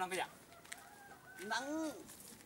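A rooster crowing once in the second half: a drawn-out call that rises and then falls in pitch.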